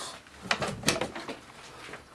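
Two sharp clicks a little under half a second apart, as a box is opened by hand.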